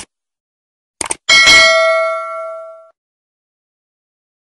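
Mouse-click and bell sound effect of a subscribe-button animation. It goes: a single click, a quick double click about a second in, then a loud bell chime that rings out and fades over about a second and a half.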